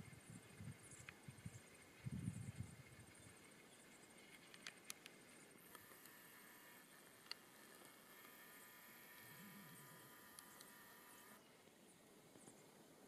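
Near silence, with a few soft low thumps in the first three seconds, a few faint clicks, and a faint steady high buzz from about six seconds in until shortly before the end.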